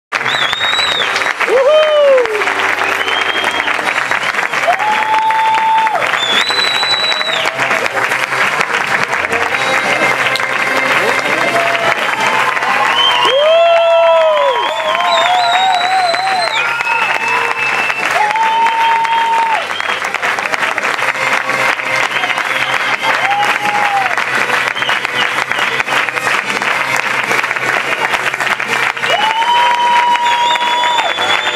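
A theatre audience applauding continuously, with music carrying a melody of held notes over the clapping.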